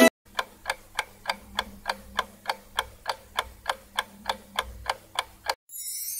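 Clock-ticking sound effect, about three ticks a second, over a faint low hum: a countdown timer for guessing, which stops about half a second before the end.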